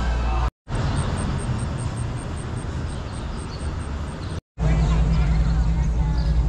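Background music for the first half second, then outdoor street ambience with a steady low rumble, broken twice by a split second of silence.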